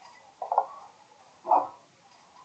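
Two short, loud animal calls, about a second apart.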